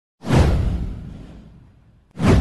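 Whoosh sound effect with a deep low rumble under it: it starts suddenly, sweeps downward in pitch and fades away over about a second and a half.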